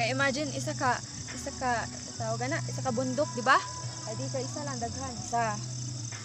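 Steady high chirring of night insects, typical of crickets, under a person's voice that rises and falls throughout.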